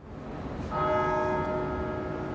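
A single stroke of a church bell, struck just under a second in and ringing on with several steady tones that slowly fade, over a background of outdoor noise.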